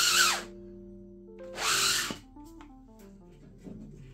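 Two short whooshing bursts of hiss, each about half a second long, the second about a second and a half after the first, over soft music of held notes that change pitch.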